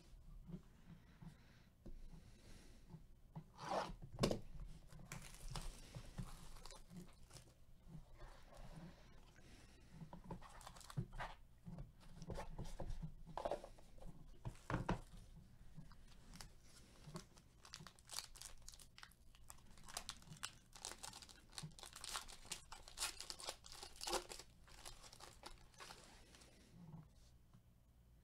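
Plastic shrink wrap being ripped off a sealed box of trading cards, with sharp tears about four seconds in and more crinkling after. Near the end comes a dense run of crinkling as a plastic card pack wrapper is torn open.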